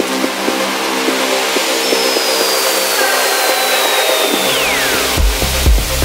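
Electronic dance music in a breakdown: a bright noise sweep and a high tone that glides slowly down, then falls away steeply about four and a half seconds in, and the deep kick drum comes back in on a steady beat of about two a second.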